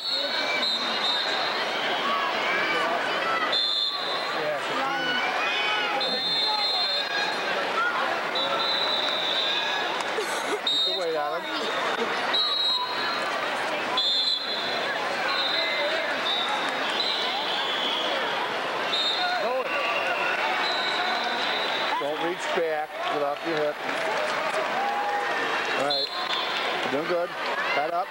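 Many overlapping voices talking and shouting in a large, echoing gymnasium, with no single voice standing out. A high steady tone cuts in and out every few seconds.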